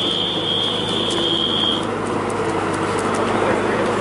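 A steady high electronic buzzer tone, like a paintball field's game buzzer marking the end of a point, cuts off about two seconds in over a constant noisy background.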